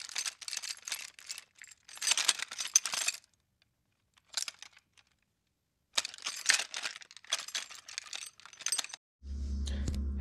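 Bursts of high, crackling, clinking noise from a logo-reveal sound effect, in groups lasting a second or so with a silent stretch in the middle. Music with a deep bass note comes in near the end.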